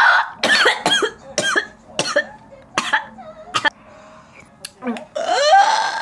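A young woman making loud wordless vocal sounds: a cough-like burst at the start, then a run of short, separate exclamations, ending in a long, loud yell near the end.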